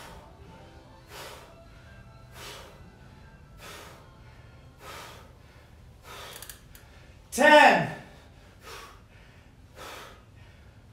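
A man's sharp exertion breaths, one about every second and a quarter, while doing single-leg glute bridges. About seven and a half seconds in comes a loud groan of effort that falls steeply in pitch.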